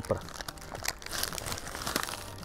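Paper burger wrapper crinkling and rustling in the hands as the wrapped burger is lifted and bitten into, an irregular run of small crackles.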